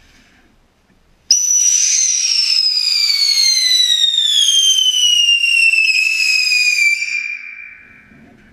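Whistling firework going off inside a large corrugated metal culvert pipe: a loud whistle starts suddenly about a second in, falls steadily in pitch for about six seconds and fades out near the end.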